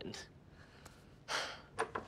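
Mostly quiet room tone, broken about a second and a half in by one short, breathy gasp, followed by a faint click.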